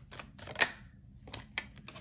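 Tarot cards being shuffled and handled, giving a run of sharp, uneven clicks and snaps, the loudest about half a second in.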